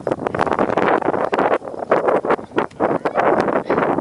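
Gusty wind buffeting the microphone, a loud, uneven rushing that surges and drops irregularly.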